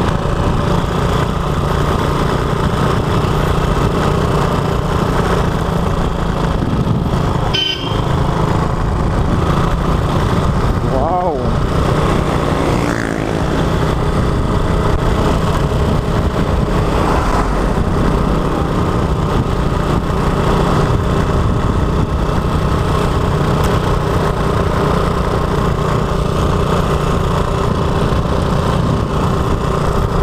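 Small motorcycle engine running steadily while riding through town traffic, with constant road and wind noise; a few brief rising and falling tones about 8 and 11 to 13 seconds in, plausibly horns of passing traffic.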